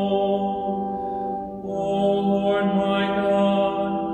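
A man singing a psalm chant in slow, long-held notes, with a brief breath about one and a half seconds in before the next phrase.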